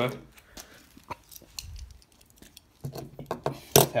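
Small die-cast toy train engines clicking and clinking as they are handled and set down: a scatter of light, irregular clicks with one sharper knock near the end.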